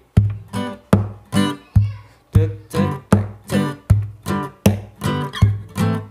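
Acoustic guitar played in a percussive reggae style: knocks on the guitar give a low bass thump, alternating with short strummed chords in a steady rhythm.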